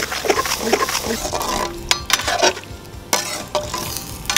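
A perforated steel ladle stirring and scraping through thick mutton gravy in a steel pot, with irregular clinks of metal on metal over the gravy's steady sizzle.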